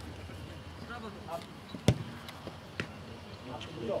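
A football kicked hard once with a sharp thud about two seconds in, followed by a fainter knock, with faint players' voices in the background.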